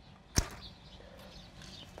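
Hand pruning shears snipping through a dry, dead vine stem: one sharp snip about half a second in.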